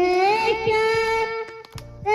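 A young boy singing into a hand-held microphone, holding one long note that breaks off about one and a half seconds in.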